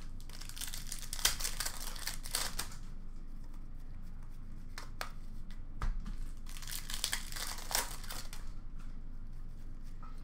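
Trading card pack wrappers crinkling and tearing with cards being handled, in two spells of crackling rustle, about half a second in and again around seven seconds.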